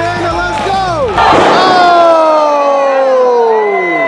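Music with a bass beat for about a second, then a loud, long crowd shout at a live wrestling show. The shout holds as one voice-like tone that falls steadily in pitch over almost three seconds.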